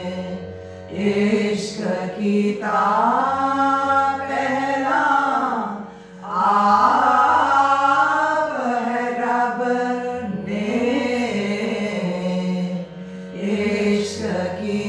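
A group of women singing a devotional hymn together in long held phrases, with short pauses for breath between them, over a steady low drone.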